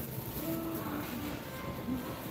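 Faint background music over the low rolling noise of a shopping cart pushed across a concrete floor.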